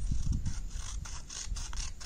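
Scissors cutting through a sheet of paper along a fold line, a quick run of repeated snips as the blades close again and again.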